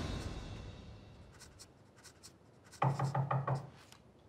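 Pen scratching lightly on paper in a few short strokes, then a quick run of about five knocks on a wooden door near the end.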